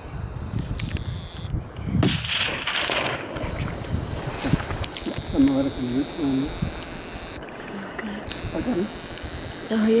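Wind buffeting the microphone of a handheld camera, with a sharp knock about two seconds in and short bursts of low, murmured voices in the second half.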